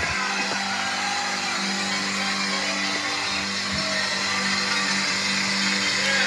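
Gospel concert music from a VHS tape playing through a TV's speakers and heard in the room, with steady sustained notes.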